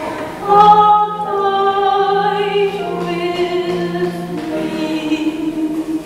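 Slow sung melody with piano accompaniment, long notes each held for a second or two.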